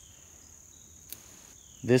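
Steady high-pitched chirring of insects, with one faint click about a second in as a dry weed stalk is bent.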